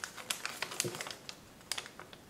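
Folded kraft paper crinkling and crackling as hands press and crease a many-layered origami model: a run of small, irregular crackles.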